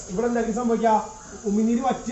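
A man speaking, in continuous phrases with a short pause about halfway through.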